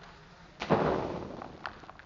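Liquid nitrogen splashed from a jug onto a bare hand and the tabletop: one sudden splash about half a second in, fading over about a second, with a small click shortly after.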